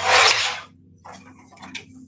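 Swing-arm paper trimmer's blade slicing through a sheet of gold metallic cardstock in one short cut lasting about half a second.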